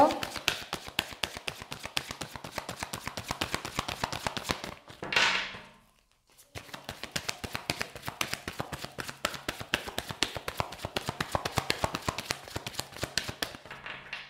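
A deck of tarot cards being shuffled by hand: a rapid, continuous patter of light card clicks. About five seconds in there is a louder rush, then a short break before the shuffling resumes.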